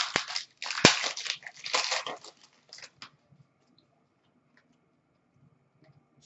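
Trading cards and their pack wrappers being handled: crinkling and rustling with two sharp clicks in the first second, stopping about three seconds in.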